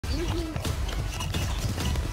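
A scuffle between men, with voices and scattered knocks and thuds over a low rumble.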